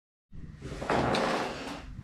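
Handling and movement noise from a person pulling back from the camera and settling into a chair: a rustling shuffle that starts a moment in, swells about a second in and fades, with a light knock or two.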